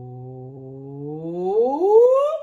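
A woman's voice singing a held low "ooh" that then slides smoothly up in pitch, getting louder as it climbs: a vocal glide tracing a melodic contour that starts low and goes up.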